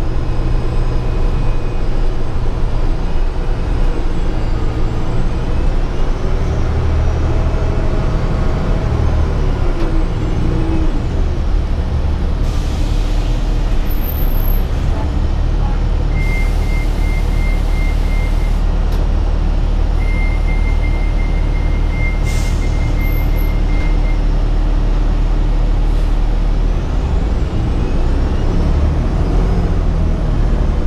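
Inside a 2015 Gillig Advantage transit bus under way: a steady low drone from the engine and drivetrain. In the first ten seconds its pitch rises and falls as the bus pulls away and the transmission shifts. Around the middle come short hisses of air and two runs of rapid high beeping.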